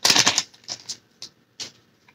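Foil wrapper of a Pokémon card booster pack being torn open and crinkled: a longer rustle at the start, then several short crinkles that grow fainter.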